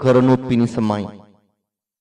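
Only speech: a man's voice speaking, trailing off about one and a half seconds in, followed by silence.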